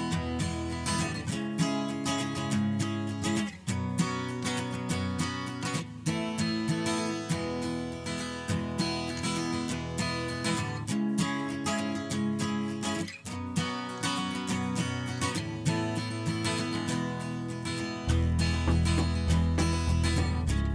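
Background music: a folk-style track led by strummed acoustic guitar. A deeper bass part comes in more strongly near the end.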